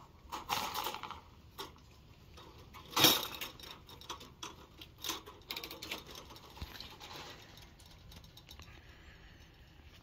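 Handling noise: a sleeve brushing over the microphone and scattered light clicks and rattles around a wire-mesh rabbit cage, loudest about three seconds in.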